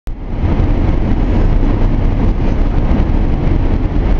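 Steady road and engine noise inside the cabin of a moving SUV, a low, even rumble of tyres and engine.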